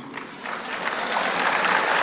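Audience applauding, swelling about half a second in and holding steady.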